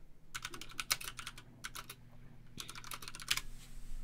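Computer keyboard typing in two quick bursts of keystrokes, one early and one about two and a half seconds in, over a faint steady low hum.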